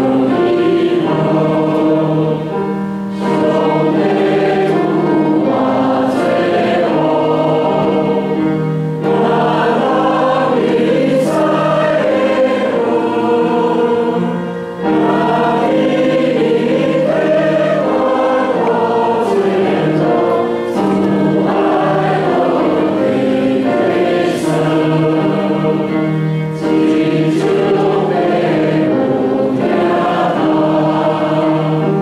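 A church congregation singing a hymn together in Taiwanese, in long sustained phrases with brief breaks for breath about every six seconds.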